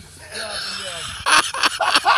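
A man breaking into loud, hearty laughter, a run of rhythmic "ha-ha" bursts about four a second, starting a little past the middle after a drawn-out breathy vocal sound.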